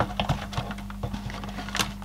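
Plastic case of an old desktop calculator being handled and pulled apart: scattered light clicks and knocks of plastic, with a sharper click near the end. A steady low hum runs underneath.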